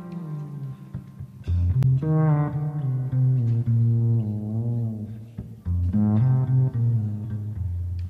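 Background music: a low melody in long held notes that waver slightly, a new phrase starting about a second and a half in and again near six seconds.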